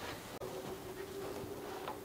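Quiet room with a faint steady electrical hum and one soft click about half a second in, after which the hum's pitch steps slightly higher.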